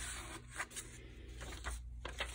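Paper pages of a handmade junk journal being handled and turned: a soft rustle and scrape of paper and card, with a few faint ticks.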